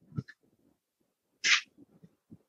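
A man's short, sharp hissing breath, like a sniff, about one and a half seconds into an otherwise near-silent pause.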